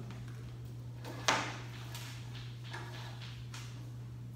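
Chalk striking and scraping on a blackboard in short strokes: one sharp knock about a second in, then a few fainter ticks, over a steady low hum.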